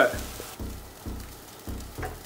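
Soy mince and vegetables frying in a pan with a faint sizzle, under background music with a soft bass beat about twice a second.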